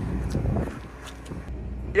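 Diesel telehandler engine idling with a steady low rumble.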